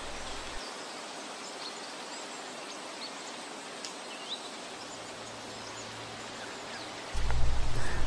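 Steady background ambience: a soft, even hiss with a few faint high chirps in the middle. A low hum swells in about a second before the end.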